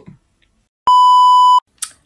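A single steady, high electronic censor bleep, about three quarters of a second long, edited in over a word between spoken lines. It starts and stops abruptly.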